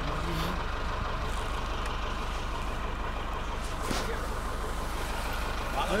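Engine of a tracked all-terrain vehicle idling steadily, a constant low rumble.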